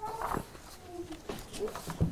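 Faint rustling of paper sheets being handled at a lectern, with a couple of short faint tones about a second in.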